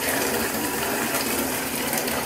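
A Lush bath bomb fizzing as it dissolves in bathwater: a steady hiss with fine crackling.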